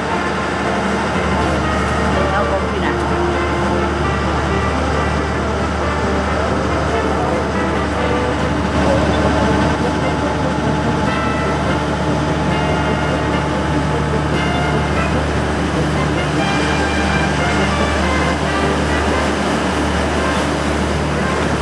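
Steady drone of an open canal sightseeing boat's engine, with people's voices over it.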